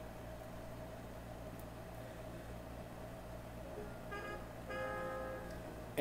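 A faint steady hum, then faint music starting about four seconds in from a Califone PowerPro PA919PS companion PA speaker, which is playing a CD received wirelessly from the master PA919.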